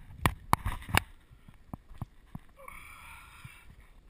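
Several sharp knocks in the first second, then fainter taps, from handling close to the microphone on concrete. About two and a half seconds in, a soft, breathy hiss lasts about a second.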